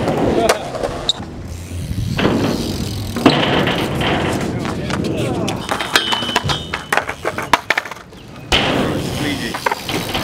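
BMX bike tyres rolling over concrete and a pyramid ramp, with sharp knocks and clacks from landings, and skateboard wheels clattering on the concrete.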